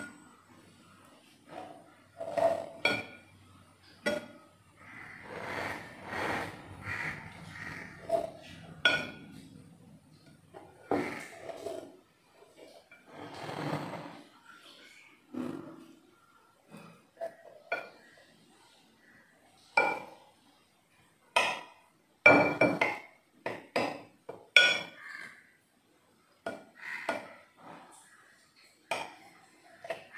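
Metal knife cutting a set biscuit pudding in a glass dish: repeated sharp clinks and scrapes as the blade strikes and drags on the glass, at irregular intervals.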